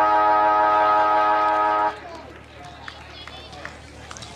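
A football ground siren sounds one steady horn blast of several pitches at once, about two seconds long, then cuts off. It is the siren that ends the quarter break and calls the players back to resume play.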